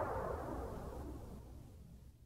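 The closing tail of a 1990s electronic dance club mix fading away: a hazy synth wash over a low rumble, dying down steadily.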